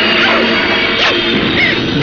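Film soundtrack: background music under a loud, noisy crashing sound effect, with a sharp hit about a second in.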